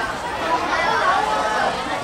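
Several voices calling out and chattering over one another at a youth football match, the overlapping shouts of players and onlookers with no words standing out.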